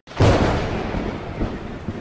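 A thunder-like crash sound effect that hits suddenly and loud, then rumbles and slowly fades.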